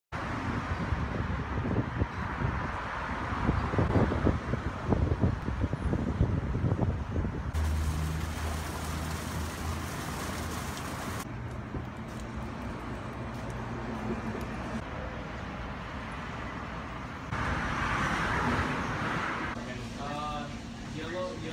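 Edited sequence of outdoor city ambience: first traffic noise with irregular low rumbling thumps, then, after a cut about seven seconds in, a small rock waterfall splashing into a pond for a few seconds. A quieter traffic background follows, and a louder steady hiss comes in near the end.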